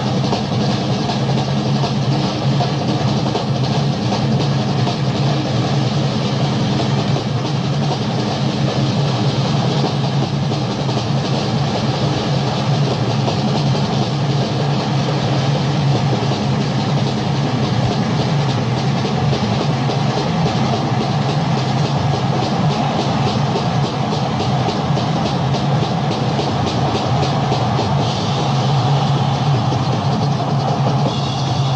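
Loud live rock band playing a fast, driving instrumental passage without vocals: a steady drum beat with maracas shaken along over a heavy low bass.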